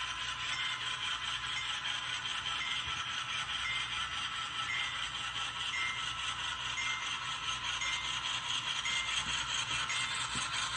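HO scale model freight cars rolling along model railroad track: a steady metallic rolling rattle from the wheels, with a faint click about once a second.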